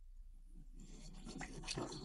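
Faint, irregular swishing and scraping of water and fine gravel in a plastic gold pan being dipped and swirled in a tub of water, starting about a second in: the washing stage of panning down sluice concentrates.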